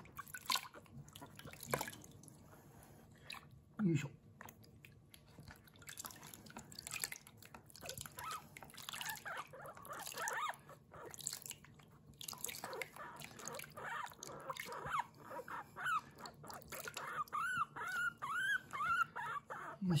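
Guinea pig squeaking ("pui pui") over and over while being washed in a basin of water, with short rising-and-falling squeaks that come in a quick run of several a second near the end. Water dripping and splashing in the basin underneath.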